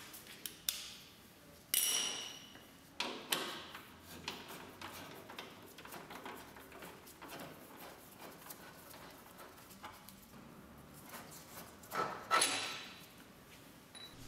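Socket wrench undoing the front diagonal link fasteners: scattered metallic clinks and knocks, one with a short ring about two seconds in, faint ticking between, and a longer rattle near the end as the hardware comes free.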